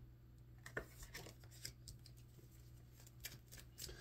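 Near silence with low room hum and a few faint, short clicks of a deck of tarot cards being handled.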